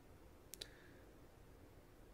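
Near silence, broken about half a second in by one brief, faint double click.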